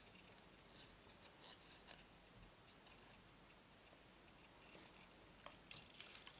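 Scissors cutting out a stamped image from a white cardstock scrap: a series of faint, irregular snips.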